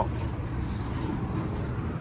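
Steady low background rumble at a moderate, even level, with a few faint ticks.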